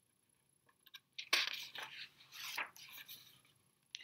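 Pages of a picture book being turned by hand: a few soft paper rustles and light clicks, starting about a second in.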